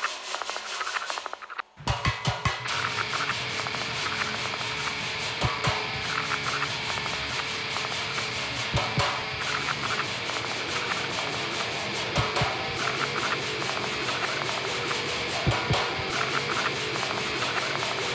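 Trailer sound design: a dense, harsh scraping noise texture with irregular deep thuds. It drops out briefly about a second and a half in, then comes back.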